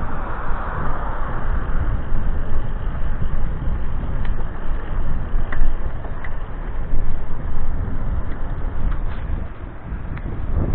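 Wind buffeting the microphone of a camera on a moving bicycle, a steady low rumble mixed with tyre and road noise, and a car passing in the first second or two.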